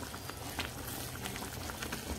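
Thick cream-and-cheese sauce simmering in a frying pan, bubbling steadily, with small bubbles popping every so often.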